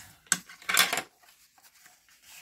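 Cardstock being folded back and forth along its score lines: two short papery crinkles in the first second, the second louder and longer.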